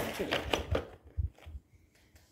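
Brief murmured voice sounds, then soft handling noise of miniature model-gun display boxes being set down on a table, with a couple of low soft thumps a little past a second in.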